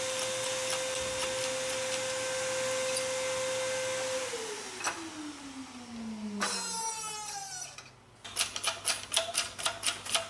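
An electric motor running at a steady pitch, then switching off and winding down, its pitch falling over about three seconds. Near the end, a quick run of sharp clicks, several a second, the loudest sound here.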